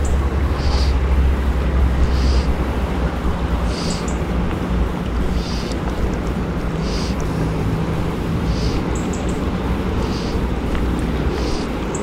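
Steady outdoor background noise with a low hum and heavy rumble for the first few seconds, and a short high chirp repeating about every second and a half.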